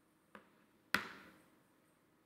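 Two sharp taps on a laptop keyboard: a faint one about a third of a second in, then a much louder one about a second in that dies away briefly in the hall.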